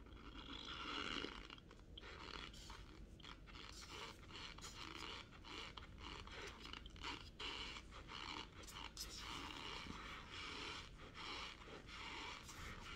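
Close, quiet chewing of dry cornstarch: a continuous fine squeaky crunching full of small crackles as mouthfuls are ground between the teeth.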